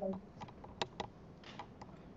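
A short spoken word at the start, then half a dozen sharp, irregularly spaced clicks and taps.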